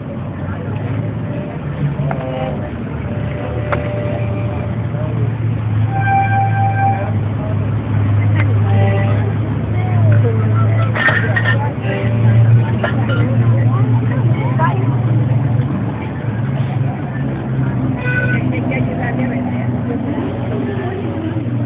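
Street ambience dominated by a steady low engine drone from nearby traffic, with background voices and a short pitched, horn-like tone about six seconds in.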